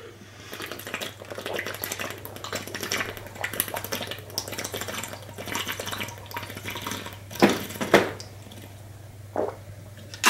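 A person chugging water from a plastic shaker bottle: a continuous run of gulps and swallows, with two louder gulps near the end.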